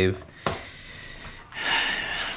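A single sharp click, then a faint steady hiss, and a short rustling noise near the end.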